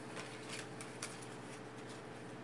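Tarot cards handled in the hands: a few faint, quick snaps and slides of card against card, about four in the first second, over a steady low background hum.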